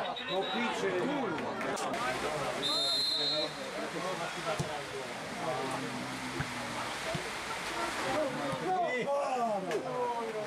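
Football players and spectators shouting and talking over one another, with a short high whistle blast about three seconds in.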